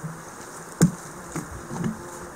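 Footsteps through dense forest undergrowth, with twigs and branches snapping underfoot; the sharpest crack comes just under a second in, and smaller cracks follow twice.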